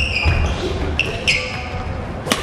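Badminton rally on an indoor court: athletic shoes squeak sharply on the floor three times, near the start and around the one-second mark, with sharp racket strikes on the shuttlecock.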